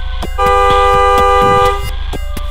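Car horn sounding one long honk of about a second and a half, two pitches together, a reflex warning at a car crossing the junction against the signal. Background music with a steady beat runs underneath.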